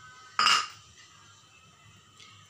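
A single sharp clink of kitchenware, a utensil or dish knocking against another hard dish, about half a second in, ringing briefly.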